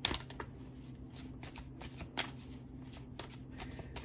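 Tarot cards being shuffled by hand: a run of soft, irregular clicking, with a sharper snap at the start and another about two seconds in.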